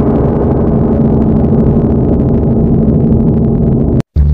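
A loud, steady low drone with a few held tones over a thick rumble, an added horror-style sound effect rather than live sound.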